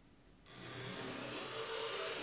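A hissing noise comes in abruptly about half a second in and grows louder, then holds steady, with a faint low hum beneath it. It comes from an experimental piano-and-electronics performance, while the strings inside an open upright piano are being worked by hand.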